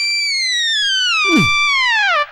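Comic sound effect: a whistle-like electronic tone sliding slowly downward in pitch, then sliding down again near the end, with a brief low falling swoop about halfway through.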